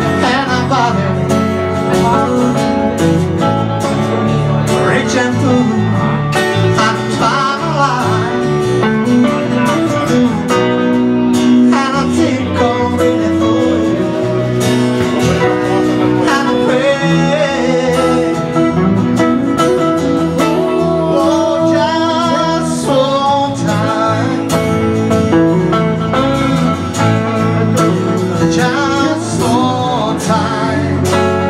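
Live unplugged blues band: acoustic guitar strummed with electric guitar backing, under continuous singing.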